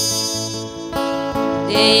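Acoustic guitar strummed steadily in a solo live performance, between sung lines; a woman's singing voice comes back in near the end.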